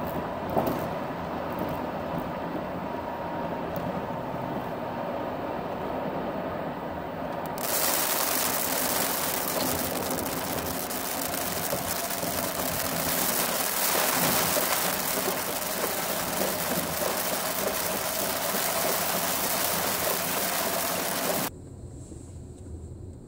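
A moving car heard from inside the cabin: steady low road and engine noise, then, about a third of the way in, a sudden switch to a louder, hissing rush that runs until just before the end, where it drops away abruptly.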